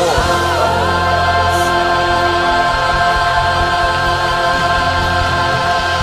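Gospel choir music: a choir holding one long chord, with a voice sliding up into it near the start.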